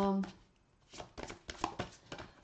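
Tarot cards being handled on a table: a run of short clicks and snaps of card stock, starting about a second in.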